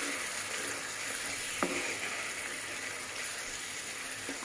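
Spice masala of onion, ginger-garlic paste and ground spices sizzling steadily in oil in a pan after a splash of water, stirred with a wooden spatula. There is one short click about a second and a half in.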